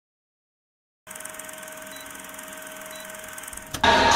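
About a second of silence, then a faint steady hum and hiss with one thin steady tone. Just before the end, loud music and crowd noise cut in suddenly.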